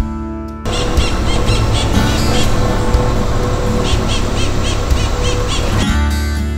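Birds calling in two runs of quick, repeated high chirps over a steady rushing outdoor background. Acoustic guitar music cuts off suddenly just after the start and comes back at the very end.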